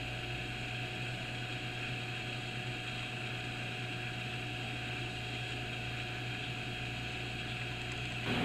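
Steady background hum of a small room: a low, even machine hum with a faint hiss over it, unchanging and with no distinct events.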